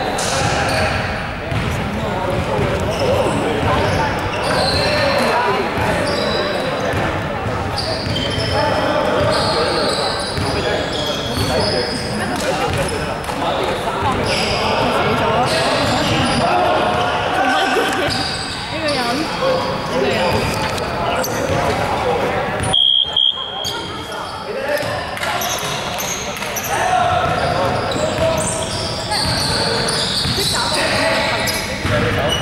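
Indistinct voices talking and basketballs bouncing on a wooden court, echoing in a large sports hall.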